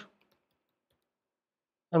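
Near silence between spoken phrases, with a few faint computer keyboard clicks as a word is typed.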